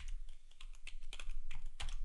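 Computer keyboard being typed on: a run of irregular key clicks as a line of code is entered.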